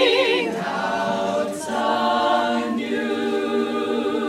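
A women's a cappella chorus singing in harmony. A held chord fades about half a second in, then new sustained chords follow roughly once a second, with a brief sung 's' or breath in between.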